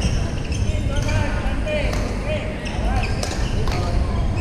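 Busy indoor badminton hall: sharp racket-on-shuttlecock strikes and sneakers squeaking on the wooden court floor, over the chatter of many voices, all echoing in the large hall.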